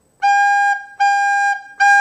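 Soprano recorder playing the note G three times as separate quarter notes on the same pitch, with short gaps between them.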